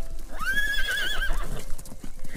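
A horse whinnying: one call that rises in pitch, then wavers, lasting about a second.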